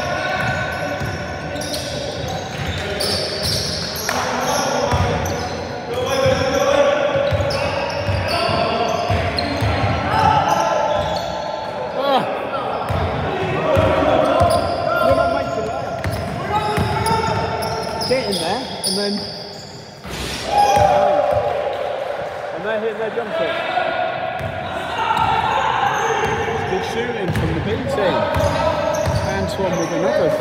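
Basketball being dribbled and bounced on a wooden sports-hall floor during play, the bounces echoing in the large hall, with players' shouting voices over it.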